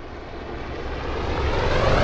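A cinematic riser sound effect for a logo intro: a swell of noise over a low rumble, growing steadily louder, building up to a hit.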